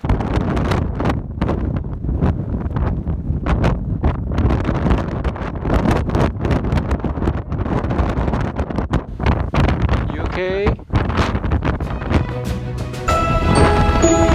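Strong gusting wind buffeting the microphone, a loud rumbling rush that never lets up. A short voice cry about ten seconds in, and background music comes in near the end.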